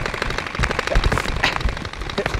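Splatrball gel-ball blasters firing in rapid bursts: a fast chattering run of sharp pops, about a dozen a second.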